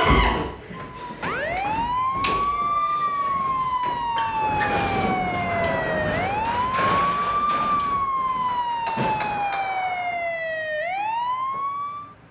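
Emergency-vehicle siren wailing: each cycle the pitch sweeps quickly up and then falls slowly, three times over the stretch.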